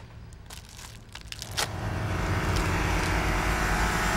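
A few faint clicks, then a low, steady humming drone that swells in about a second and a half in and holds.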